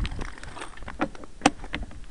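A few sharp clicks and knocks, spaced irregularly about half a second to a second apart, from a stopped mountain bike and its front-mounted camera being handled by a gloved hand.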